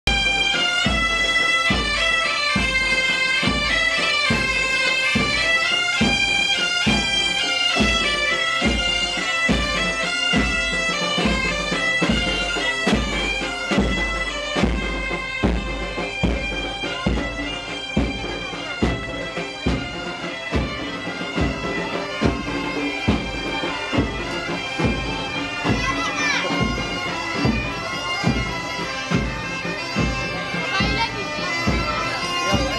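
A band of gaita bagpipes plays a marching tune over a steady drone, with a drumbeat about twice a second.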